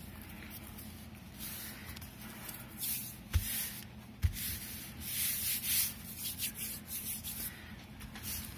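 Hands rubbing and smoothing kraft-paper envelopes flat against a cutting mat, pressing a wet-glued envelope into place: several dry papery swishing strokes, mostly in the second half, with two soft thumps about a second apart near the middle.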